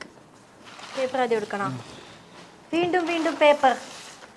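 Two short spoken phrases from a person's voice over a faint crinkling of packing paper and plastic wrap as items are pulled out of a cardboard box.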